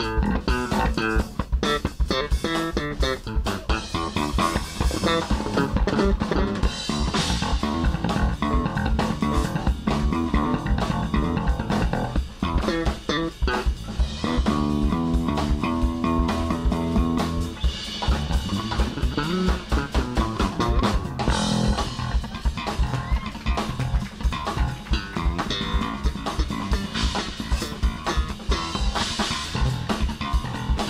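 Live funk band music with a busy electric bass guitar line to the fore over a drum kit, the notes quick and unbroken.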